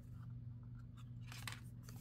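Tarot cards being handled, with a few short crisp card slides about a second and a half in, over a low steady hum.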